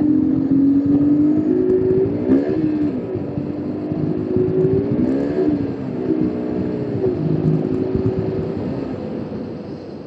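KTM RC 200 BS6's 199.5 cc single-cylinder liquid-cooled engine running under way, its revs climbing and dropping back twice. The engine then holds steady and fades near the end.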